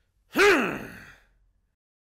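A man's short wordless cry, rising and then falling in pitch and dying away over about a second.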